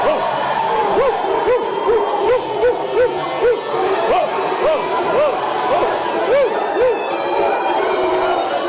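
Human voices imitating dog barks: a run of short woofs, about two a second, following a text score that tells the audience to bark and then to bark louder. Music plays beneath them.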